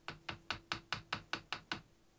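A small hammer lightly tapping a thin sheet-metal strip bent over a lathe chuck jaw, about five quick even taps a second, stopping shortly before the end. The tapping works the bend so the strip sits snug on the jaw.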